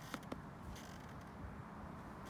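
Quiet outdoor background noise, mostly a low rumble, with two faint clicks in the first half second.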